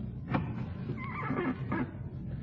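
Old-time radio sound effect: a single knock or thump, then a wavering, creaking squeal lasting most of a second, like a door hinge creaking as a door opens.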